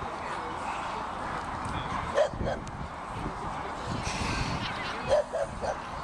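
A dog giving short barks: two about two seconds in, then a quick run of three near the end, over steady background chatter.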